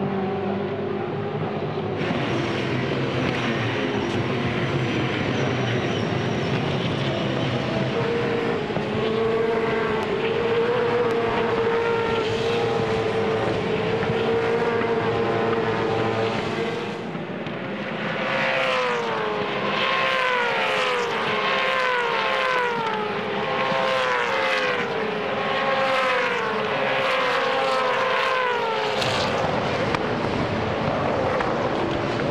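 V8 Supercar racing engines (Holden Commodore and Ford Falcon, 5-litre V8s) running hard on track, the engine note climbing and stepping down through gear changes. From about two-thirds of the way in, a string of cars goes by in quick succession, each note sweeping downward.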